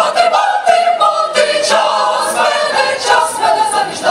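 Mixed choir of women's and men's voices singing together in held chords.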